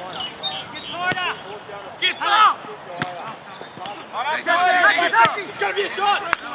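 Shouting voices of players and spectators on an outdoor football pitch, rising and falling in several calls, with two sharp thuds of the football being kicked, about a second in and about three seconds in.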